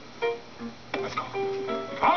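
Piano being played, a run of separate notes and chords that each strike sharply and fade, heard through a television's speaker.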